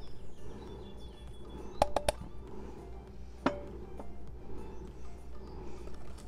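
Faint background music over a low steady hum, broken by sharp ringing clinks of a kitchen utensil against a mixing bowl as flour goes into the batter: three in quick succession about two seconds in, then one more about a second and a half later.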